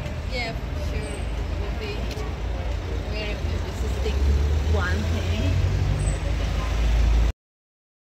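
City street traffic: a steady low rumble of passing vehicles, louder from about four seconds in as a vehicle goes by, with faint voices over it. The sound cuts off suddenly near the end.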